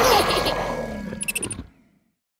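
A cartoon roar at the close of a children's song, fading out over about a second and a half. A few quick high ticks come near the end before it cuts to silence.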